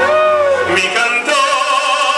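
A man singing in operatic style through a handheld microphone, holding one long note with vibrato that rises and then sinks, then taking up a new held note about halfway through.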